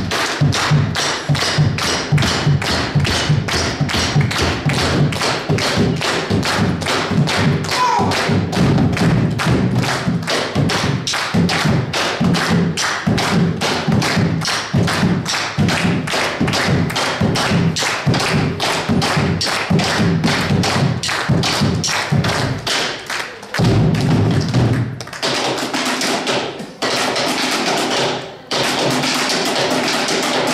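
Two bombos legüeros, large rope-tensioned Argentine bass drums, beaten with sticks on the heads and rims in a fast, steady run of strikes. Near the end the pattern changes to denser, hissier rolls broken by two short gaps.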